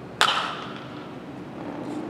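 Baseball bat hitting a ball in batting practice: a single sharp crack about a fifth of a second in that rings out briefly.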